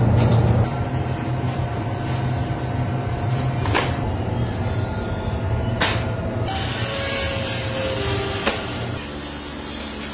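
Veneer roller dryer running: a steady low hum with high metallic squeals and a few sharp clicks. About nine seconds in, it gives way to a quieter machine hum.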